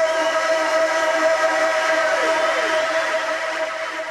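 One long, loud, horn-like electronic tone held at a steady pitch, with a few short falling slides about two seconds in. It fades slightly toward the end, building up to the drop of an electronic bass track.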